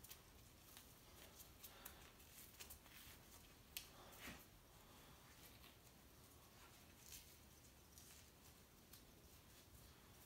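Near silence with faint, scattered soft clicks and rustles: gloved fingers working a red fox's skin loose from the hind leg during skinning.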